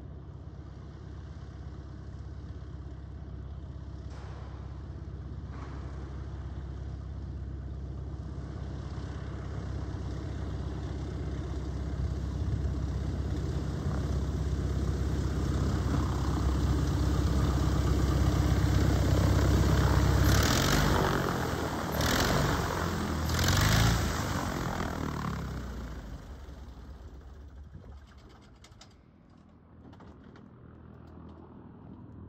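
Pitts Special biplane's piston engine and propeller running at taxi power, growing louder as the plane approaches. Three short, louder surges of power come about two-thirds of the way in, then the engine is shut down and the sound dies away near the end.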